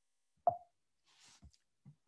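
A single short mouth pop from the speaker about half a second in, followed by a faint breath.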